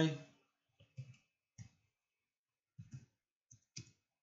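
About six faint, irregularly spaced clicks of computer keyboard keys as a command is typed.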